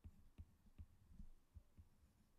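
Faint taps and strokes of a stylus writing on a tablet's glass screen. They come as an irregular run of soft, dull thuds, some with a light tick on top.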